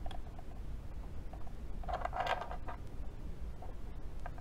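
Small clicks and clatter of a diecast model's centre-lock wheel nut and its little wrench tool being handled and fitted, a few light ticks, then a short cluster of sharper clicks about two seconds in.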